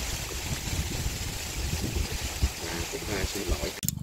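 Open wood cooking fire burning as a steady noisy hiss with a low rumble. Faint voices murmur in the background in the second half, and the sound cuts off abruptly near the end.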